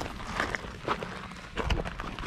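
Footsteps scrambling over rock and loose gravel: irregular crunches and scuffs, with one heavier thump near the end.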